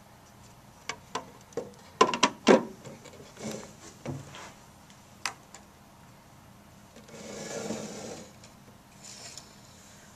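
Clicks and knocks of a plastic enclosure being handled and its lid fitted onto the case body, loudest as a pair of knocks about two seconds in. Then a scraping rub for about a second near the end.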